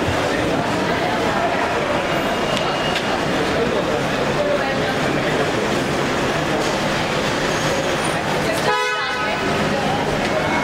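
Crowd noise with voices, and a short single car horn honk near the end.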